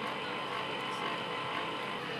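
Cotton candy machine running with a steady whir as its spinning head throws out sugar floss that is wound onto a stick.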